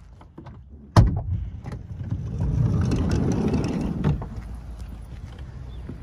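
Handling noise from a camera being brought out of the dark: a sharp knock about a second in, then a couple of seconds of rubbing and rustling that ends in a click.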